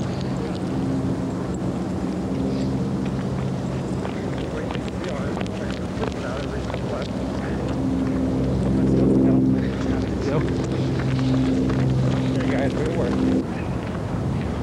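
A steady engine hum from a running motor vehicle, growing louder partway through, with wind noise on the microphone.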